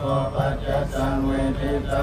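Theravada Buddhist monks chanting Pali verses in unison, a steady recitation of held and shifting low male voices.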